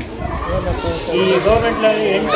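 Voices talking, overlapping at times, with no other clear sound.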